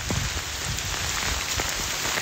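Steady rain falling, an even hiss, with a low uneven rumble underneath.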